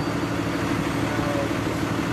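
An engine running steadily at idle: an even, unchanging low hum.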